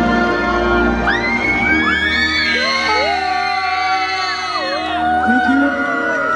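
Music with long held chords plays in a large hall. From about a second in, a crowd joins with whoops and shouts that rise and fall in pitch over it.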